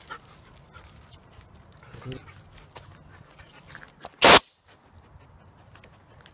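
A pet corrector can of compressed air fired once: a single loud, short hiss about four seconds in. It is a startling blast of air meant to stop a dog biting its leash.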